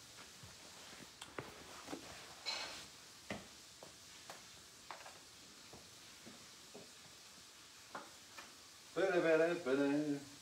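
Scattered light clicks and knocks of handling as a vinyl record is set up on a home hi-fi, then a man's voice briefly near the end.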